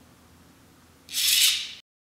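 A short, loud burst of hissing noise, about two-thirds of a second long, that starts about a second in and then cuts off suddenly.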